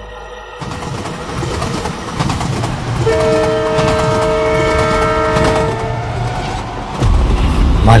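A train running with a rumble that builds. Its horn sounds one long chord for about two and a half seconds in the middle, and the rumble grows louder near the end.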